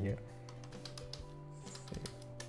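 Computer keyboard keys clicking in short irregular runs as a command is typed, over soft background music with sustained notes.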